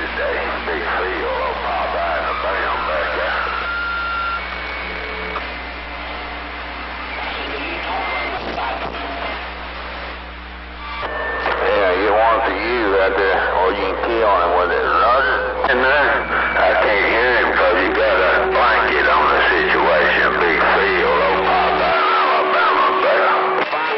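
Magnum CB radio receiving distant stations over skip: several garbled voices overlap under static, with a steady low hum and short steady whistles. About halfway through a stronger signal comes in and the voices get louder.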